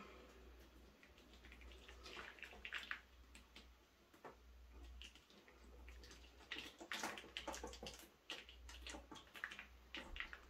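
Faint, scattered drips and spatters of runny acrylic pouring paint falling off the edges of a tilted canvas, with light handling sounds.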